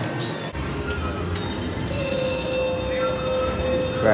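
VGT slot machine's electronic sounds during a spin, then from about halfway a steady electronic ringing tone as the reels land on a small mixed-bar win and the credits pay out.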